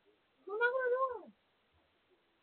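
A single cat meow, rising and then falling in pitch, lasting under a second.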